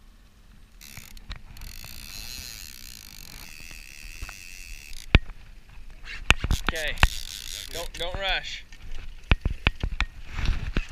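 A fishing reel running with a steady whir for a few seconds, then a string of sharp knocks, with a couple of short voice exclamations in between.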